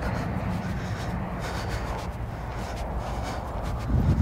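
Steady low rumble of wind on the microphone in an open field, with no distinct sound events.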